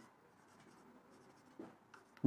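Very faint marker strokes on a whiteboard, close to silence, with one short, slightly louder sound about one and a half seconds in.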